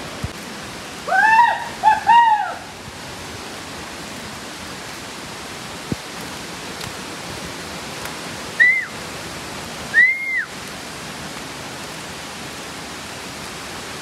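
Steady rushing of the Agaya Gangai waterfall pouring down heavily. Short arching high calls sound over it: three close together about a second in, then two more near the end.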